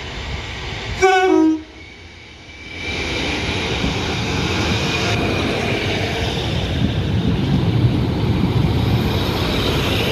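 Class 153 diesel multiple unit giving a short two-note horn blast about a second in, the second note lower. It then runs past close by along the platform, its diesel engine and wheels rumbling and growing louder.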